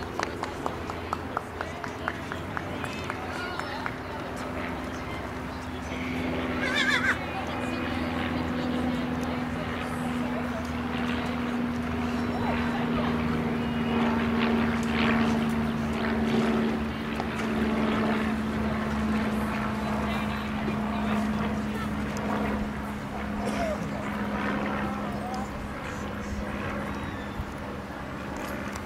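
A few sharp hoof thuds from a horse in a grass dressage arena in the first two seconds, under indistinct voices and a steady low drone that slowly falls in pitch.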